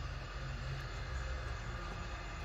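Steady low background rumble with no distinct click or other event.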